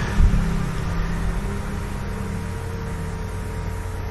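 A steady low drone of sustained tones under a faint even hiss, with one short soft bump just after the start.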